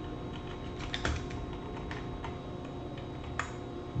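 Keys being typed on a computer keyboard: a scattered run of irregular clicks, a few of them sharper, about a second in and near the end.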